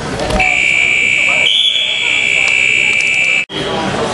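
Electronic scoreboard buzzer sounding one steady, shrill tone for about three seconds, signalling the end of a wrestling period, then cutting off suddenly. Voices in the gym are heard faintly underneath.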